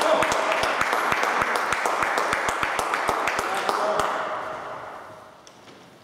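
Spectators clapping, with voices mixed in, dying away about four seconds in.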